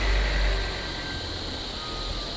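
Low rumble of a nearby idling vehicle engine, easing after about half a second, over a steady high insect drone.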